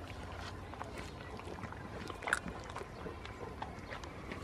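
A goat chewing close by: irregular small clicks and crunches, one sharper click a little past halfway.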